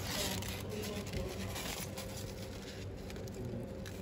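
A steady low hum with faint rustling handling noise.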